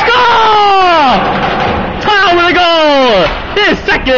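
A man's excited, drawn-out yells celebrating a goal: two long shouts, each sliding down in pitch, then a couple of short ones near the end.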